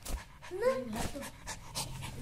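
Pet dog panting in quick, noisy breaths, worn out from playing.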